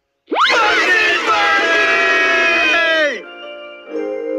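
Several cartoon voices screaming together in fright for about three seconds, sweeping up sharply at the start and falling away at the end.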